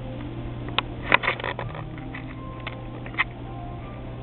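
A few sharp clicks and knocks, with a quick cluster about a second in, over a steady low hum.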